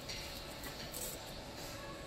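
Faint background music over low restaurant room noise.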